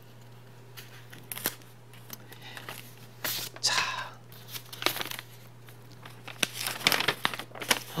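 Folded brown kraft paper being handled and unfolded by hand: light rustling and crinkling with scattered crackly clicks, busiest near the end.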